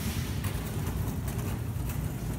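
Steady store background noise: a low rumble with a hiss over it and no clear words.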